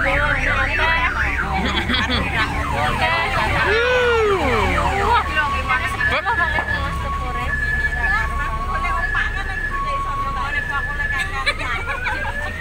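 Electronic siren horns on sepor mini road-train vehicles sounding. Several warbling and sweeping siren tones overlap at first. From about five seconds in, a two-tone high-low siren alternates about every 0.7 s, and a rising wail begins near the end.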